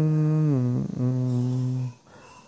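A man's voice holding two long, steady hummed or chanted notes, the second a little lower than the first, with a brief break between them a little under a second in.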